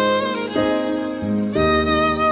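Instrumental music: a bowed cello playing a slow melody of sustained notes, with new notes starting about half a second and a second and a half in.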